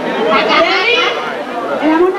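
Several voices talking and calling out over one another, with crowd chatter.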